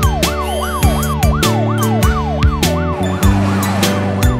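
Cartoon fire-engine siren rising and falling quickly, about three sweeps a second, over instrumental music with a steady drum beat.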